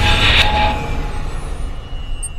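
Sound-designed logo sting: a deep rumble under a bright hissing swell, cut by a sharp click about half a second in, then dying away.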